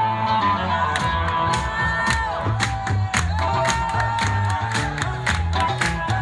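Live electric oud and bass guitar playing, the oud's held notes bending in pitch over a repeating bass line. A beat of sharp percussive hits comes in about a second in.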